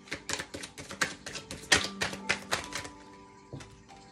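A tarot deck being shuffled by hand: a quick, irregular run of papery slaps and flicks of the cards, the loudest about two seconds in, over soft background music with held notes.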